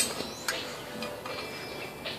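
A light click of aluminium plate pieces touching as a cut piece is set against the plate's edge, with a second, smaller click about half a second in, over a faint steady background hum.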